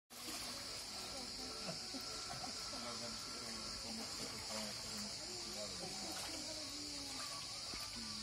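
Steady high-pitched buzz of cicadas over the distant, overlapping voices of people chatting and calling in and around a swimming pool.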